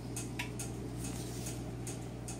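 Faint regular ticking from a dining room fan, over the low steady hum of central air conditioning running.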